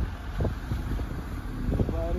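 Wind buffeting a phone's microphone, an uneven low rumble.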